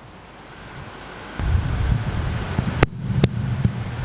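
Low rumbling noise of air buffeting a microphone, swelling about a second and a half in, with two sharp clicks near the end.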